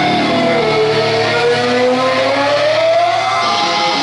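Live heavy rock band: one long held note that dips and then slowly slides up in pitch over a low droning chord, with no drum hits.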